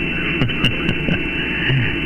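AM CB radio receiver on channel 6 (27.025 MHz) giving steady static and hiss between transmissions, with faint garbled traces of weak signals underneath.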